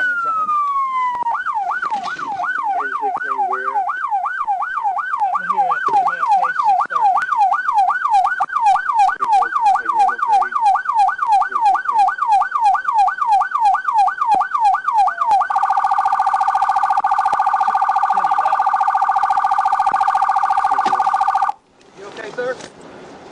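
Police car siren: a falling wail, then a fast yelp of about three sweeps a second, switching about fifteen seconds in to a much faster warble, and shut off abruptly just before the end.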